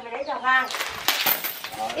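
Metal chain locked to a girl's ankle clinking and scraping on a concrete floor as she walks, several sharp clinks about a second in.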